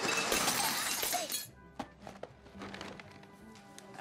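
Loud clatter of snack packages and plastic jars being knocked off store shelves onto the floor for about a second and a half. It then drops off suddenly to a quieter stretch of background music with a few small clicks.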